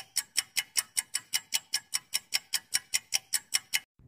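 Countdown-timer ticking sound effect: rapid, even clock-like ticks, about six a second, that stop shortly before the end.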